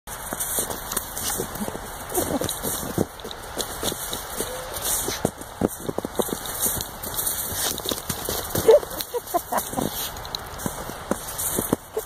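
A dog nosing and pawing at a ball in snow: many short crunches and crackles of snow, with a few brief vocal sounds from the dog, the loudest about nine seconds in.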